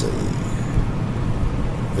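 Steady low hum and hiss of room background noise during a pause in speech, with no distinct events.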